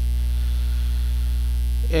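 Steady electrical mains hum on the recording, loud and unchanging, with a low buzz of harmonics above it. Nothing else sounds until a voice starts right at the end.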